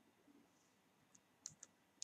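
Near silence: room tone with a few faint clicks, a close pair of them about a second and a half in.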